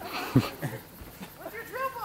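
A person's voice making short, high-pitched vocal sounds that rise and fall in pitch near the end, after a brief noisy burst near the start.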